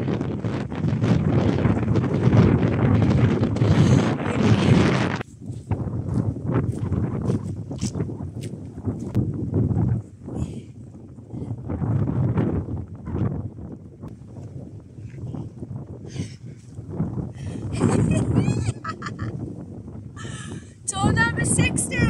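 Wind buffeting the phone's microphone, heaviest in the first five seconds and then coming in gusts. Near the end come a few short pitched calls.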